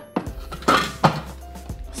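Plastic lid of a Thermomix TM5 set onto its stainless-steel mixing bowl: a few sharp clicks and one louder clack just under a second in as it seats. Background music plays underneath.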